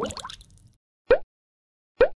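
Three short water-drop "bloop" sound effects, each a quick upward-sliding pop: one at the start that trails off over about half a second, one about a second in, and one at the end.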